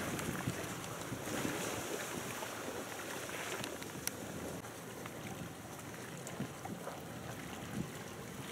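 Wind on the microphone over a steady background hiss, with one sharp click about four seconds in.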